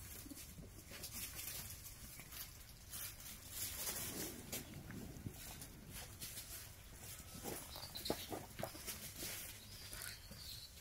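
Faint sounds of a vervet monkey troop at play: scattered calls and scuffling, with a few light knocks.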